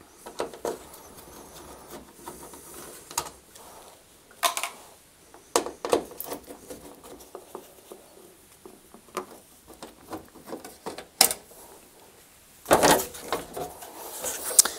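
A hand screwdriver undoing the screws on a tumble dryer's sheet-metal back panel and heater cover: scattered small clicks, scrapes and taps of screws and metal. Near the end comes a louder clatter as the metal heater cover is pulled off.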